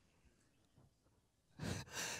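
Near silence for about a second and a half, then a man breathes out heavily into a handheld microphone, a short sigh-like exhale.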